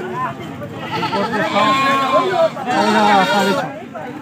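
A young goat or sheep bleating several times, its calls wavering in pitch, with people's voices behind.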